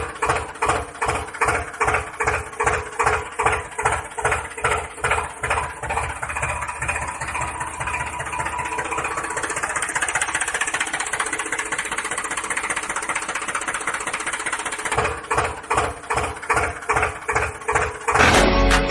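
Diesel tractor engine chugging at about two beats a second, running faster and steadier through the middle, then settling back to the slow chug near the end.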